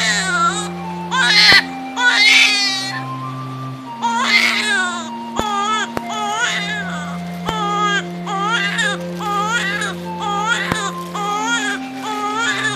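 A baby crying in repeated wails, one after another, over background music of slow held chords.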